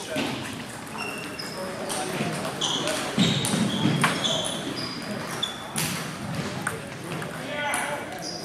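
Busy table tennis hall: ping-pong balls clicking on tables and bats from the surrounding matches, scattered brief high squeaks, and a murmur of voices echoing in the large gym.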